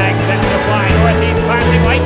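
Background music, with the engines of small race cars running on a paved oval mixed in underneath.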